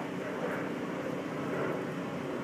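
Steady outdoor background noise with a faint low, even hum, like a distant engine running.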